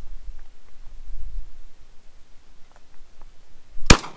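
A single pump-action Mossberg 500 shotgun shot just before the end, very loud and sharp with a short echo. Before it, only a low rumble of wind on the microphone.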